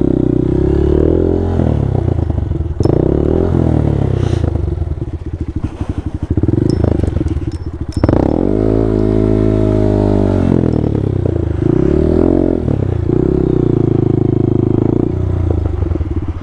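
Honda Grom's 125 cc single-cylinder four-stroke engine revving up and down in short bursts at low speed, with one longer rise and fall about halfway, as the bike is worked through mud. A few knocks and clatters from the bike come through over the engine.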